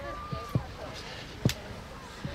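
A voice calls out briefly at the start, followed by a few dull thumps, the sharpest about one and a half seconds in, over steady outdoor background noise.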